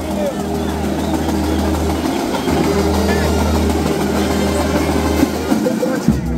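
Brass band playing, its tubas holding long low notes of two to three seconds each, with brief breaks about two seconds in and near the end, and higher brass parts over them.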